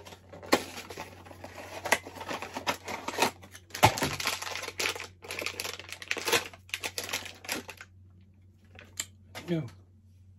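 A cardboard blind box and the foil bag inside it being opened by hand: rapid crinkling and crackling foil with sharp tearing sounds, stopping about eight seconds in.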